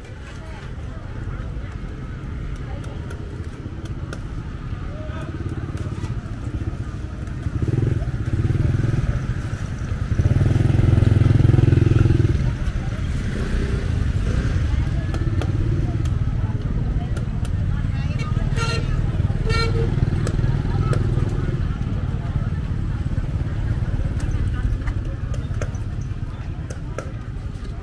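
Small motorbike engines running as they pass along a busy market lane, loudest when one goes by close about ten seconds in, over voices of people chatting. Two short high beeps sound about three-quarters of the way through.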